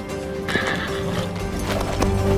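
Background music with sustained tones, with a horse's neigh about half a second in.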